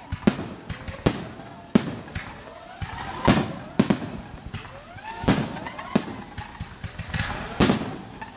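Aerial firework shells bursting in a professional display: about eight loud sharp bangs at irregular spacing, roughly one a second, with smaller pops and crackle between them.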